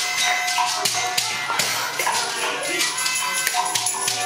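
Live band music: held, steady tones over busy hand percussion with frequent tapping and rattling strikes.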